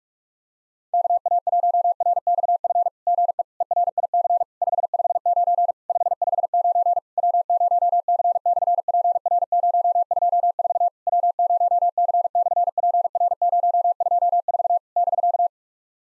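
Computer-generated Morse code at 45 words per minute: a single steady mid-pitched tone keyed in rapid dits and dahs with short gaps between words. It starts about a second in and stops just before the end. It sends the summit station's reply: 'good evening Eric', a 559 signal report sent twice, and summit reference W0C/PR-024.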